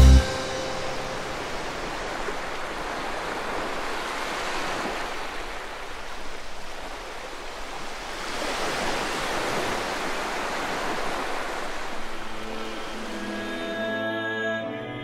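Sea surf washing on a shore: a rushing noise that swells and fades twice. Soft music returns near the end.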